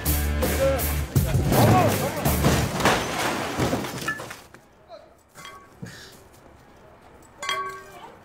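A car crashing down onto its roof, with breaking glass and crunching metal a couple of seconds in, under background music with a steady beat. The music cuts off about four and a half seconds in, and a brief voice sounds near the end.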